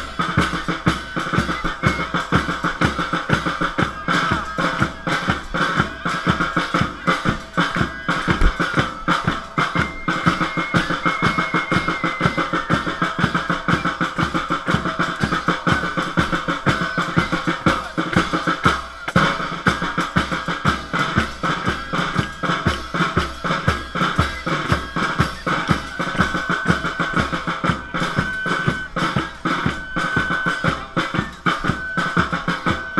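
Processional street-band drumming in the style of Apulian 'bassa musica': bass drum and snare drums beat a fast, steady rhythm, with a sustained high instrumental tone held over the beat.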